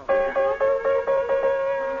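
A single piano key struck over and over, about four times a second, sounding one note. The string is being tightened to bring a flat note up to pitch, and a lower partial creeps slightly upward.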